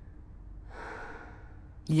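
A person breathing out once, a soft drawn-out exhale that swells and fades over about a second.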